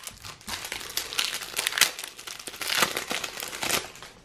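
Foil Match Attax trading-card packet crinkling in the hands in irregular bursts as it is opened and the cards are taken out.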